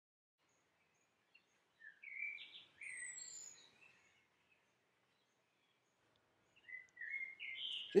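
Birds calling outdoors: short chirps and whistling glides in two bursts, one about two seconds in and another near the end.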